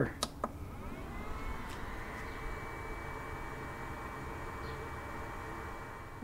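Two button clicks on a Topdon Tornado 30000 battery charger as it is switched to repair mode. The charger then starts up with a whir that rises in pitch for about a second and then holds steady.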